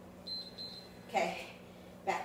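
Two short high-pitched electronic beeps in quick succession, typical of an interval timer marking the start of a work set, followed about a second in by a brief voice sound. A steady low hum runs underneath.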